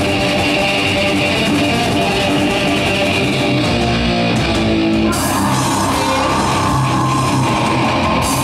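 Live heavy metal band playing through a PA, with distorted electric guitar and bass guitar on a riff. About five seconds in, the band comes in harder with crashing cymbals and a fuller sound.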